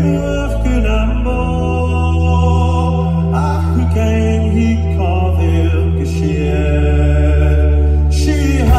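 A live band playing a Scottish Gaelic song: a male voice singing over acoustic guitars and sustained low bass notes, with the hall's reverberation.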